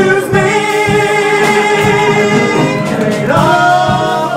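Two male voices holding a long sung note together over a live band of piano, bass and drums; about three seconds in they move to a new note.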